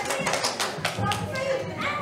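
Hand claps, a quick run of about six in the first second, with young children's voices chattering around them.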